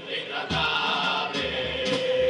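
A carnival murga of men singing a pasodoble together in chorus, backed by guitar and bass drum.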